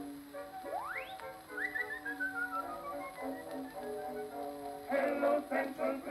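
An acoustic gramophone with a steel needle and a large exponential horn plays a 1915 acoustically recorded Columbia disc. The band accompaniment holds chords, with a fast rising glide in pitch about a second in and then a quick falling run of short high notes. Near the end the male vocal quartet starts singing.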